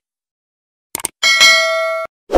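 Subscribe-button sound effects: a quick double mouse click about a second in, then a bright notification bell ding that rings on steadily until it is cut off sharply.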